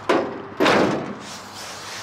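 The steel hood of a 1978 Plymouth Trail Duster being slammed shut: a short knock at the start, then a louder slam about half a second in that dies away quickly.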